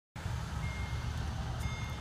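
A high electronic warning beep sounds twice, each about half a second long, over a steady low rumble.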